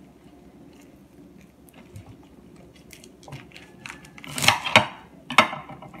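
A bunch of fresh kale leaves being handled and lifted from a plate, the crisp leaves rustling. Faint small ticks come first, then two short, loud rustles near the end.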